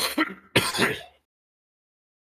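A person coughing and clearing their throat, about three rough bursts in quick succession within the first second, then stopping.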